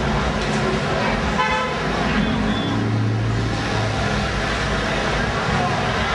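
Crowded street at night: people talking and a car moving along the road, with a brief horn toot about a second and a half in.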